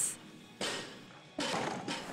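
Barbell loaded with bumper plates dropped from overhead onto the lifting platform: two heavy impacts under a second apart, each dying away in the large gym.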